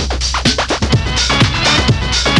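Progressive techno DJ mix from a 1997 cassette recording: a steady low bass under a rapid run of falling sweeps, about six a second.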